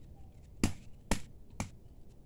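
A hand-held stone striking a hard, woody carao pod three times, about half a second apart, cracking it open to get at the pulp.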